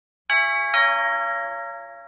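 A two-note ding-dong chime, like a doorbell, on an intro logo: two struck ringing notes about half a second apart, each fading out slowly.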